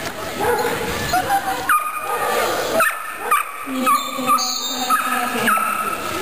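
A dog giving about half a dozen short, high-pitched yelps while it runs an agility jumping course, with voices in the hall.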